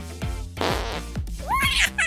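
Fingerlings baby monkey toy's electronic burp, a raspy burst about half a second in, set off by cradling its head. A short rising high-pitched call follows near the end, over background music with a steady beat.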